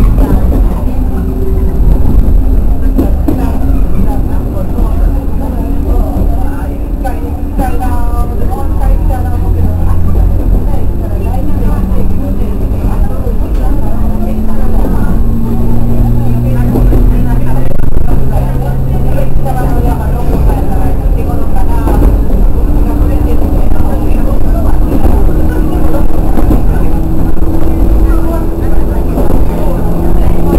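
A JR West 103 series electric train running, heard from its cab: wheel and track rumble under a motor whine that rises steadily in pitch through the second half as the train picks up speed.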